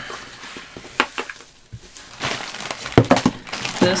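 Plastic bags of paper and ribbon craft embellishments rustling and crinkling as they are handled, with a few sharp clicks and knocks. The rustling is fuller and louder in the second half, with the loudest knock about three seconds in.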